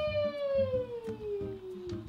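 A long, drawn-out playful vocal 'whoa', one held voice sliding slowly downward in pitch, over quiet background music with a repeating beat.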